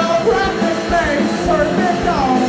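Live punk rock band playing: electric guitars and drums, with a man singing over them.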